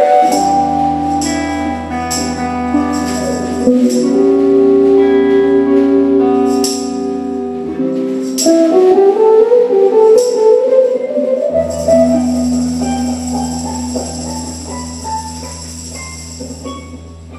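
Live band instrumental: electric guitar lines over electric upright bass and drums with cymbal strokes. A rising guitar run about halfway through leads into a held chord with a cymbal wash that slowly fades.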